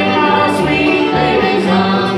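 Live bluegrass string band playing, with upright bass, acoustic guitar, mandolin, banjo and fiddle, and singing over the instruments.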